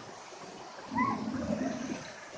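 Steady rush of water pouring from a pool's waterfall feature and splashing into the pool, with a brief high-pitched call about a second in.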